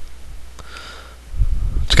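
A short pause in a man's narration, filled by a faint breath; his speech starts again near the end.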